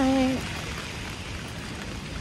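Steady rain falling on wet pavement, an even hiss throughout.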